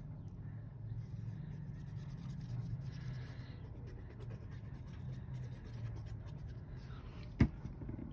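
Faint scratching of a liquid glue bottle's nozzle dragging across cardstock as zigzag lines of glue are squeezed out, with light paper handling. One sharp tap near the end.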